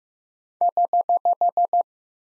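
Morse code tone sending the correction prosign (HH): eight short, evenly spaced dits at 15 words per minute, all on one steady beep pitch.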